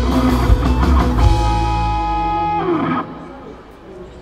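Live rock band with electric bass, guitars and drums playing the final bars of a song, ending on a held note that falls away. The music stops about three seconds in.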